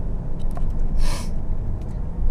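Steady low road and engine rumble inside a moving car's cabin, with a short hiss about a second in.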